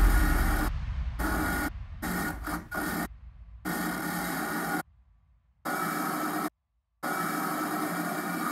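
Hiss-like static with faint steady tones in it, switching on and off in blocks of about a second with sudden dead silences between them. A low rumble fades away over the first two seconds.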